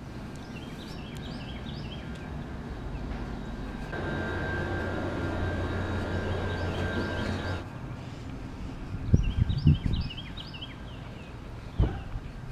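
Outdoor morning ambience with small birds chirping. A steady mechanical hum with a thin whine runs through the middle and stops abruptly, and a few dull knocks come near the end.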